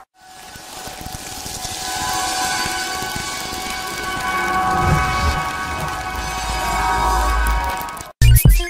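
Promo sound design: a hissing swell with a held chord of steady tones over it, fading in at the start, a deep rumble building in the second half, then cutting off suddenly at the end.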